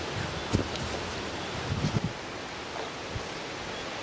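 Steady outdoor wind noise on the microphone, with a few soft thumps from a backyard trampoline mat as a jumper lands on it, about half a second in and again around two seconds in.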